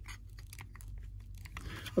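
Scattered light clicks and taps of a plastic action figure and its bow being handled and posed, over a low steady hum.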